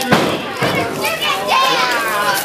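A single thud just after the start as a wrestler's stomp lands on a downed opponent on the ring mat, followed by a crowd's voices, with children shouting.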